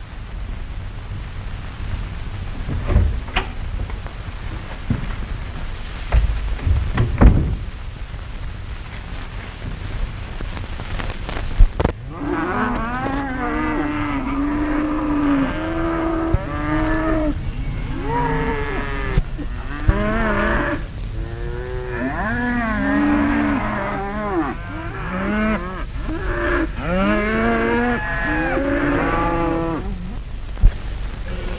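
A few dull thumps, then from about twelve seconds in a herd of cattle mooing, with many long, overlapping calls rising and falling in pitch.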